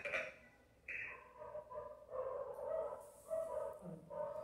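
Faint, repeated short animal cries: a run of brief high yelps or whines, starting about a second in after a moment of dead silence.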